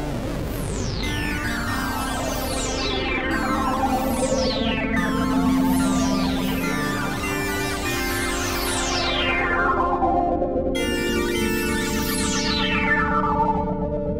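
Fender Chroma Polaris analog synthesizer playing held chords on an oscillator-sync patch. With each note or chord, a bright, sharp sweep slides down through the overtones, again and again, over sustained notes that change now and then.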